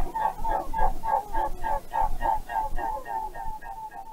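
A bird calling in a rapid series of short, clucking notes, about six a second, growing weaker toward the end.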